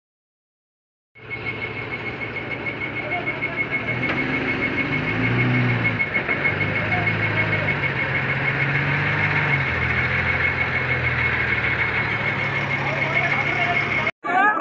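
About a second of silence, then heavy truck engines running on a highway, with the engine pitch rising and falling as they rev. A steady high-pitched beeping alarm sounds throughout.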